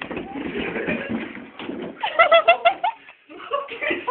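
A person's body thudding and sliding down a flight of indoor stairs in a jumble of bumps. About two seconds in comes a burst of five or so short, high-pitched hoots from a person, each rising and falling.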